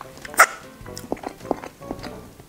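Mouth sounds of someone chewing a mouthful of pasta, with a few soft smacks, over background music; one short, sharp, louder sound about half a second in.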